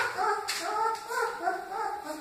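Great Dane puppies whimpering and squealing: a quick, steady run of short, high cries, about three a second.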